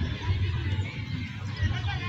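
Children's voices shouting and calling out to each other, over a low rumble.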